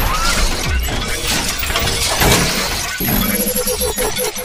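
Sound effects of an animated intro: loud crashing, shattering hits over a heavy bass rumble, with music underneath.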